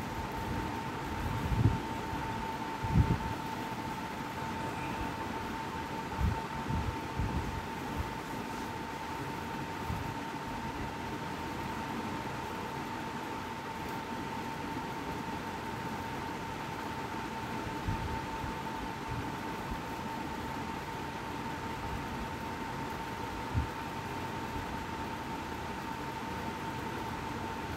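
Steady background hiss with a thin, steady high tone running under it, broken by a few soft low thumps, the clearest two in the first few seconds and one near the end.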